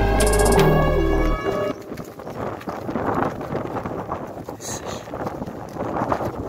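Background music that stops about a second and a half in. After it comes irregular rustling and crackling of dry reeds and grass being handled and stepped through.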